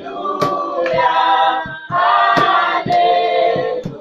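A church worship group's choir singing together in harmony, holding sustained notes, with a few sharp percussive hits.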